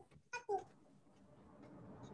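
A short, high voice sound falling in pitch, heard once about half a second in, like a brief '네' of acknowledgement, followed by near silence.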